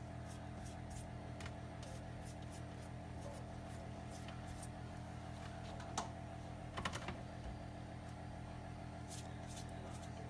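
Soft, light clicks and taps from a basting brush and egg rolls being handled on a metal wire rack, over a faint steady hum. A slightly louder tap comes about six seconds in and another just before seven.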